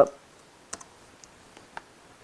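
A few separate sharp clicks from operating the computer while editing, over quiet room tone. The clearest click comes about three quarters of a second in, a weaker one right after it, and another near the end.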